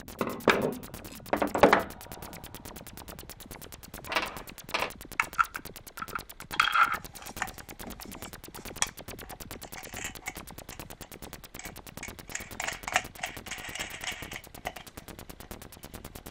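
Workbench handling sounds of small hand-tool work: pliers snipping wire, then small metal nuts and screws clicking against a plastic tube as they are fitted, in scattered sharp clicks and knocks. The loudest clicks come in the first two seconds, and a longer scraping rustle comes near the end.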